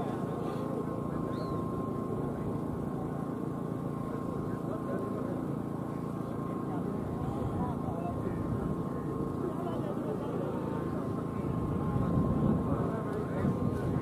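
A crowd of men shouting and talking over one another, with a thin steady tone running underneath, growing louder near the end as the bull carts start off.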